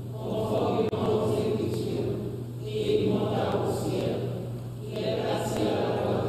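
A group of voices singing or chanting together in church, in phrases of about two and a half seconds with a short breath-like dip between them, over a steady low hum.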